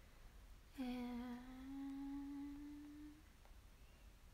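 A young woman humming one long note with her mouth closed, about two and a half seconds, the pitch drifting slightly upward before it fades.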